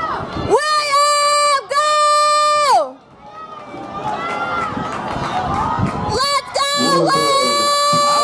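A spectator yelling long, held shouts of encouragement at a runner: two shouts of about a second each near the start, then a short one and a longer one near the end, over the murmur of a crowd cheering.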